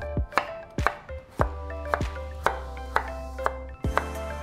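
Kitchen knife slicing daikon radish and carrot on a wooden cutting board, a sharp knock of the blade on the board about twice a second, over background music.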